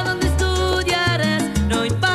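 Salsa music: an instrumental passage with no singing, the brass section playing held and sliding lines over bass notes and percussion.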